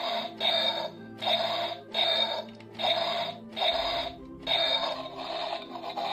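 Battery-powered light-and-sound action dinosaur figure (a bootleg Indominus Rex) playing its electronic growl through its small speaker as its back is pressed: a run of about seven short growls in even succession, each under a second long, over a steady music bed.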